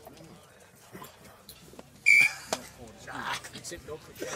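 Low spectator murmur with one short, high-pitched yelp about halfway through, then a single sharp knock.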